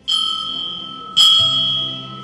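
A consecration bell struck three times, about a second apart, each clear tone ringing on and fading. It marks the elevation of the host just after the words of consecration.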